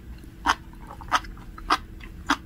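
Sea grapes (umibudo seaweed) being chewed close to the microphone, the beads popping in three sharp, crunchy clicks a little over half a second apart.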